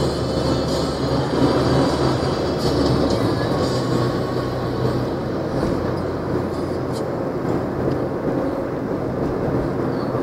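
Bus engine running under way with steady tyre and road noise, heard from inside the cabin; the low engine hum changes about three seconds in.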